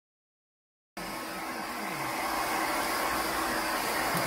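Silent for about the first second, then a hair dryer starts blowing and runs steadily.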